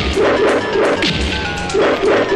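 Film fight sound effects: several sharp punch and kick whacks laid over fast, rhythmic action background music.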